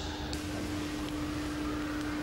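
A steady hum on one pitch over a faint even hiss: the background room tone of the hall.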